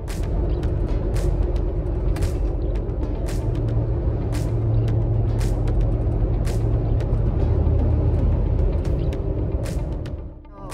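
Road noise inside a car cruising on an expressway: a steady low rumble of tyres and engine, with a deeper drone that swells through the middle as the car runs alongside a heavy truck. Sharp ticks come about once a second.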